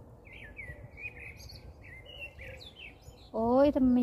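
A small songbird singing a quick run of warbling chirps and trills for about three seconds, fading out just before a woman's voice cuts in near the end.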